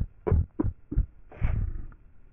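Heavily effect-processed advert soundtrack: four short, deep thuds about a third of a second apart, then a longer rumbling burst just past the middle, much like a throbbing heartbeat.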